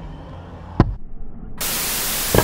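Steady static hiss, like an untuned television, cutting in abruptly about one and a half seconds in, after a low rumble and a single sharp click.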